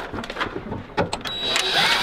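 Screws being driven into a steel equipment rack: clicks and knocks of the driver bit against the rack-mount screws, then a short whirr of the power driver running near the end.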